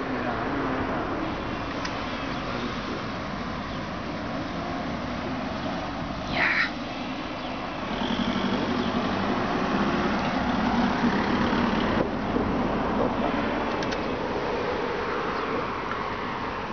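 Road traffic noise with a steady hum, growing louder from about halfway as a car's engine goes by. A brief high-pitched sound stands out about six seconds in.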